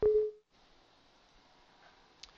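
A click and a single short electronic beep, one steady mid-pitched tone lasting about half a second, followed by faint room noise.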